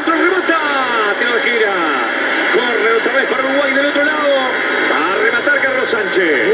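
A football commentator's voice continuing over steady stadium crowd noise in a match broadcast.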